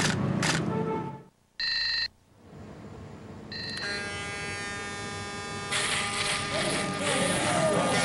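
A short electronic beep about a second and a half in, and a second beep at about three and a half seconds. Then a sustained synthesizer chord holds, with a layer of hiss-like noise joining it about six seconds in.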